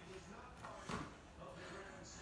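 A basketball pass landing with a single soft thump about a second in, over quiet room tone.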